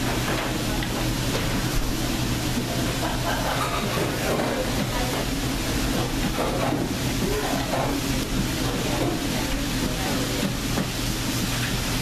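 Steady machine hum and hiss of a working kitchen, with faint voices in the background.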